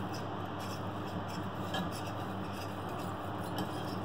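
A spoon stirring a milk mixture in a small saucepan, with a steady soft scraping and light ticks of the spoon against the pan over a low hum.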